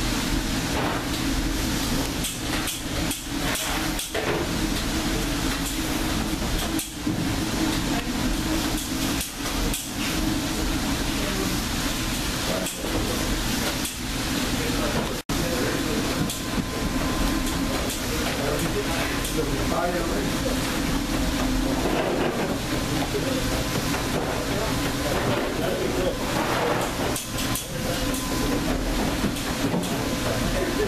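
Steady kitchen background noise with indistinct voices. The sound cuts out briefly about halfway through.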